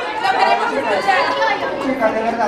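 A group of schoolgirls chattering, many voices talking over one another at once.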